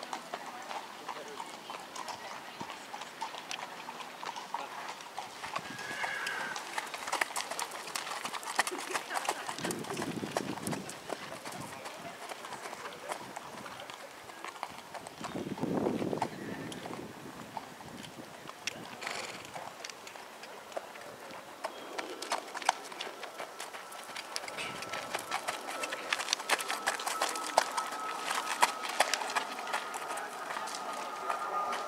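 A horse's hooves clip-clopping on paved ground as it is led in hand, walking and jogging away and back; the hoofbeats come densest in two stretches, early and again near the end.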